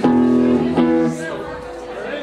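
Amplified electric guitar playing a few ringing chords, each held briefly before the next, dying down after about a second and a half.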